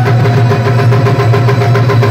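Live Pashto folk music: rabab strummed in quick, even strokes over a steady low drone from the harmonium, with tabla.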